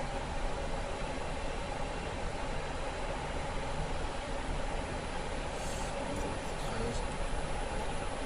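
Steady rushing roar on a Boeing 777-300ER flight deck, with faint steady tones above it. The GE90-115B engine is turning at maximum motoring on its air starter, about 32% N2, with no fuel yet introduced.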